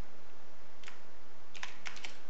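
Computer keyboard being typed on: a single keystroke about a second in, then a quick cluster of keystrokes near the end, over a steady background hiss.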